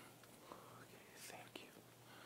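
Near silence: faint whispering with a few soft clicks and rustles as a chalice and purificator cloth are handled at an altar.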